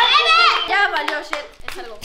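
A child's high voice, then a short run of sharp clicks and rustles from hands tearing open gift wrapping.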